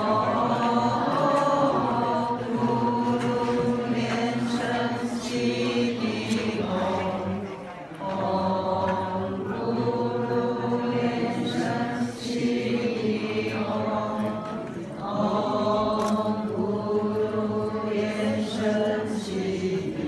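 A group of voices chanting a Buddhist mantra in unison, in long drawn-out phrases with short breaks between them.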